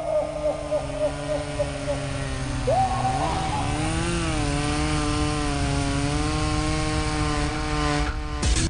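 A sustained buzzing, machine-like drone held at a steady pitch, over a low hum. Its pitch jumps up briefly about three seconds in and wavers a little just after.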